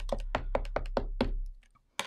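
Ink pad being dabbed repeatedly onto a clear stamp on the plastic lid of a stamp positioner to ink it: quick taps, about six a second, that stop about a second and a half in.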